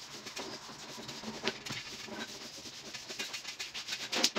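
A cloth rubbing across a tabletop as it is wiped down, with a few short light knocks.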